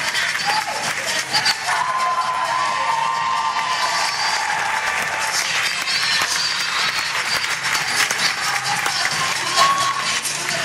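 Audience applauding, a dense patter of many hands clapping, with music playing underneath.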